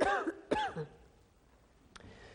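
A woman coughing and clearing her throat into her hand, two short bursts in the first second.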